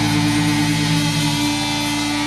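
Live rock band holding one loud, distorted chord on electric guitars and pedal steel guitar, ringing on without drum hits. One of the lower notes drops away about one and a half seconds in.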